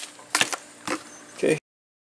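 Cardboard box and plastic bag being handled: a few short, sharp clicks and rustles about half a second apart, then the sound cuts off abruptly near the end.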